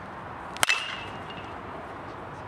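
A baseball bat hitting a pitched ball once, about half a second in: a sharp crack with a short metallic ping ringing after it, typical of a metal bat.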